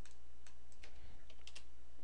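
Typing on a computer keyboard: a handful of short, irregular keystroke clicks, over a steady low hum.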